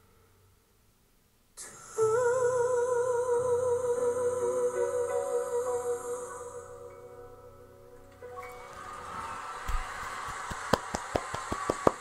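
After a moment of near silence, a male singer holds one long high note with vibrato over soft accompaniment. About eight seconds in, audience applause and cheering begin and grow louder.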